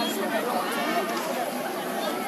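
Crowd chatter: several people talking at once, with no single clear voice.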